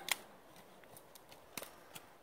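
A few faint, sharp clicks over quiet outdoor background: one just after the start, a double click about a second and a half in, and one more near the end.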